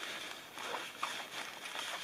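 Rustling and handling of gear inside a fabric backpack as a folded plastic trash bag is pulled out, a soft, fairly steady rustle.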